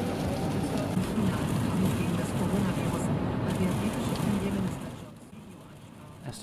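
A German newsreader's voice on the car radio, heard inside the cabin over steady road and rain noise; it all fades down about five seconds in.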